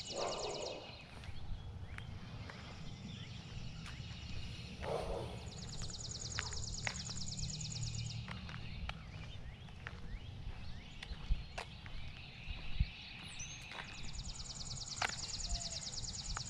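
Songbirds singing outdoors: a high, fast trill lasting two to three seconds comes three times, with scattered short chirps between, over a steady low rumble.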